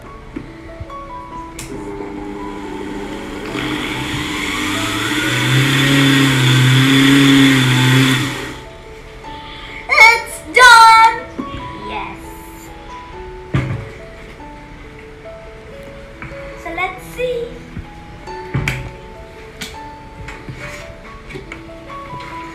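Electric mixer grinder running for about five seconds, grinding dry biscuits to powder, getting louder, then cutting off abruptly. Background music plays throughout, and shortly after the grinder stops a child gives two loud, high cries.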